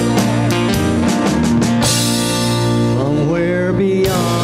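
Live church worship band playing: keyboard and guitar chords over bass and a drum kit keeping a steady beat. A cymbal crash comes about halfway through, and a singing voice glides in near the end.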